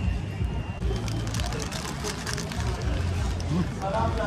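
City street ambience: a steady low traffic rumble with voices in the background, and a run of short sharp clicks about halfway through.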